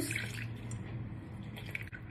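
Lime juice dripping from a hand-held citrus squeezer into a glass bowl of liquid sauce.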